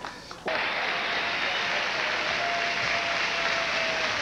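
Large studio audience applauding, cutting in suddenly about half a second in and then holding steady.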